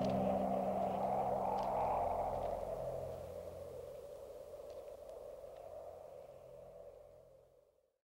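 Closing film score: a sustained low drone of steady held tones, with a rushing noise that swells about two seconds in and then slowly fades out to silence near the end.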